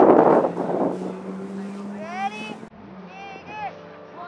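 Wind buffeting the microphone at first, then children's voices calling out over a steady low hum; the sound changes abruptly at a cut near the end.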